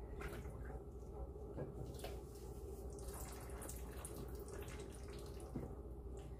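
Faint pouring of liquid casting slip in a thin stream out of an upturned plaster mold: the excess slip is being drained so that only the cast shell is left in the mold.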